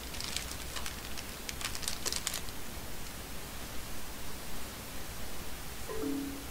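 Steady hiss and low hum of the recording's background noise, with a quick cluster of light clicks in the first two seconds or so.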